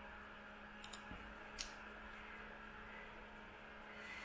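Faint computer mouse clicks: a quick pair about a second in and a single click shortly after, over a steady low hum.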